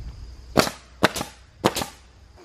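Nail gun driving nails through a wooden siding board into the frame: about five sharp cracks, the later ones coming in quick pairs.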